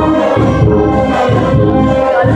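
A brass marching band playing live: trumpets and other brass holding chords over a sousaphone bass line, with percussion and a steady beat.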